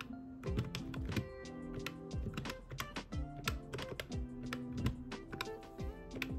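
Round keys of a desktop calculator pressed one after another in a quick, uneven run of clicks as figures are entered for a running total, over soft background music.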